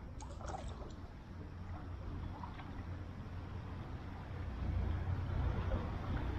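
River water trickling and running along a kayak's hull as it moves through the current, over a steady low rumble that grows louder near the end.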